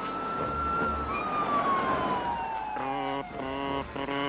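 Cartoon sound effect of a car speeding along a road: one whining tone that rises and then slides slowly down in pitch, like a vehicle racing past. From about three seconds in, a buzzy horn-like tone sounds in short repeated blasts.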